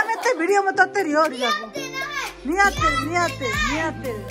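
Children shouting excitedly and laughing in a small room. Background music comes in about halfway through.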